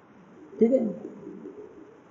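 A man's voice saying one short word ('theek hai', okay) over quiet room tone, followed by a faint drawn-out tail.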